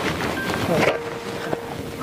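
Wind buffeting the microphone: a steady, noisy rush, with a faint steady tone through the middle of it.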